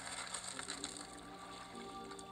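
Rapid mechanical clicking, like a ratchet, over faint steady tones.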